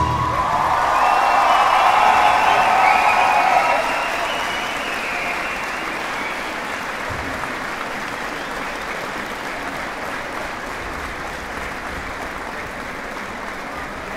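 Audience applause following a dance performance, loudest in the first four seconds and then slowly fading.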